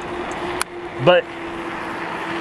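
Asomtom RV3 electric bike climbing a steep hill slowly on throttle alone: a steady, unchanging hum from its electric motor working under load, beneath a constant rush of wind and tyre noise.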